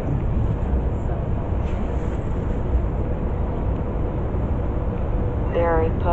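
Steady low rumble of city street traffic with a faint steady hum in it; a voice begins briefly near the end.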